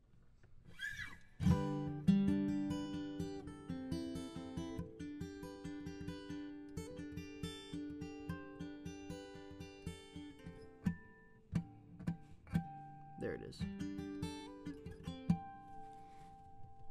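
Taylor acoustic guitar with a capo on the neck, a D chord shape strummed and then picked in a quick, even pattern, sounding in the key of G. Near the end it thins out to a few single ringing notes.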